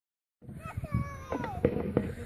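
A girl going down a stainless-steel playground slide: starting about half a second in, a high squeal falls in pitch, and a few sharp knocks follow in the second half.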